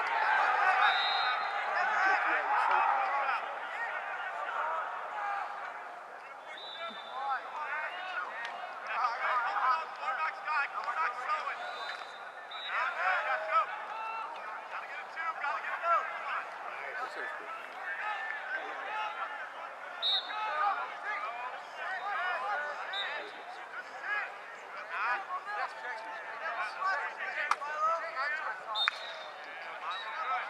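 Outdoor youth lacrosse game: voices of players, coaches and spectators calling out across the field during play, with a few short sharp knocks.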